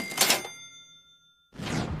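Television sound effect: a short metallic hit with a bell-like ring that fades over about a second, then a rising whoosh near the end.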